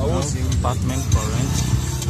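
A car driving, with steady engine and road rumble heard from inside the cabin, under a voice.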